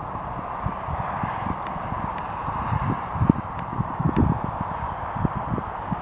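Cessna 172 landing, its engine a faint steady hum at low power, under irregular gusts of wind buffeting the microphone.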